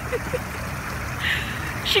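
Steady rush of running fountain water, with a low rumble beneath and brief faint laughter.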